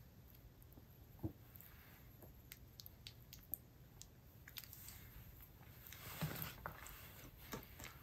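Faint soft squishes and small clicks of raw liver slices being pushed by hand onto a thin metal skewer.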